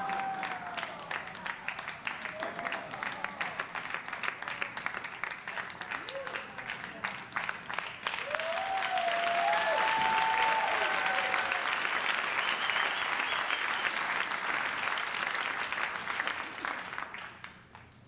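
Audience applauding, the clapping swelling about halfway through and dying away near the end, with a few voices calling out over it.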